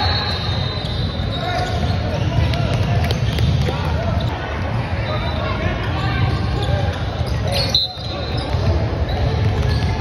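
Basketball bouncing on a hardwood gym floor as a player dribbles at the free-throw line, over steady chatter of spectators and players. There is a brief dropout about eight seconds in.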